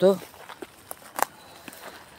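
Footsteps on a gravel track: a few separate crunches, the clearest just after a second in.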